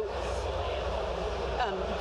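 Steady low rumble and hubbub of a busy exhibition hall, with a woman's voice briefly heard near the end.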